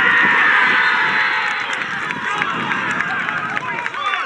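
Several voices shouting and cheering loudly on a football pitch as a shot beats the goalkeeper: one long, high cheer that eases after about two seconds into scattered shouts.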